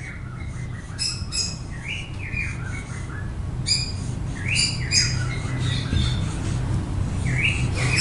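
Marker squeaking on a whiteboard while writing: a string of short, high squeaks, many sliding down in pitch, coming irregularly stroke by stroke over a steady low hum.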